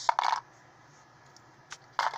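Small plastic Lego pieces clattering against each other in a plastic cup as a hand rummages through them: a short burst of clicks at the start, then a single click near the end.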